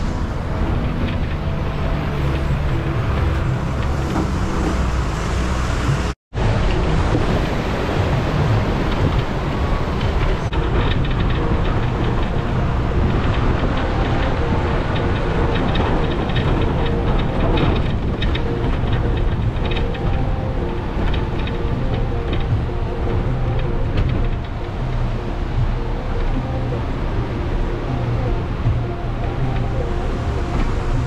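A bus engine and its tyres on a rough dirt road, with background music over them after a sudden cut about six seconds in.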